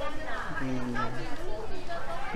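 Speech: a man's voice talking briefly over the chatter of other voices in a crowded market.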